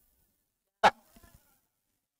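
Near silence broken by a single short, sharp click a little under a second in.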